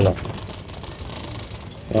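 Metal shopping cart rattling as it is pushed across a hard store floor.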